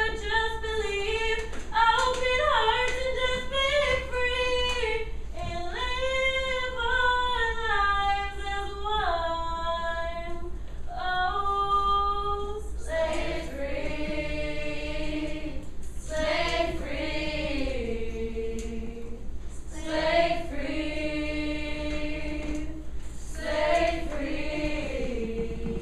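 Female voices singing unaccompanied: a single high voice holds long, gliding notes, then several voices join in harmony about halfway through.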